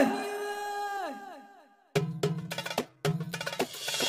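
Song music: a held sung note fades away with echo over the first two seconds, and after a moment of silence a run of sharp percussion hits starts, broken by a short gap about a second later.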